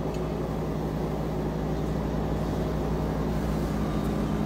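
A steady low mechanical hum with a hiss over it.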